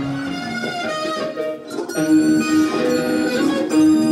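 Guitars playing live, without singing: held, ringing notes that dip briefly about a second and a half in, then come back louder.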